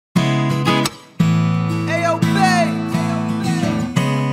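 Opening of a hip-hop instrumental beat built on strummed guitar chords. The chords cut out briefly just before a second in and come back, and a melody that slides up and down in pitch enters about two seconds in.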